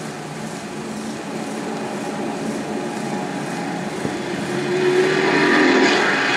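Street traffic noise, a steady rushing that grows louder toward the end, as if a car is drawing near.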